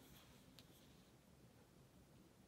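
Near silence: faint room tone, with one small light tap about half a second in.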